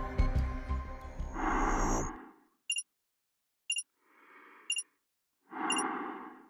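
Background music fading out in the first two seconds, then short, high electronic countdown beeps about once a second. Between the beeps come slow, hissing breaths, as of a person breathing inside a spacesuit helmet.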